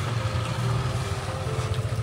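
An engine idling: a steady low hum with a fast, even pulse.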